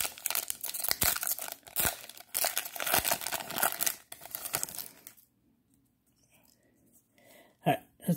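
Foil trading-card pack wrapper being torn open and crinkled by hand: a dense, crackling rustle that stops about five seconds in. A short sound follows near the end.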